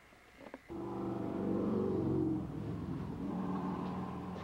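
A click, then a workshop power tool's electric motor switches on and runs with a steady hum, swelling over the first second or so and then easing slightly.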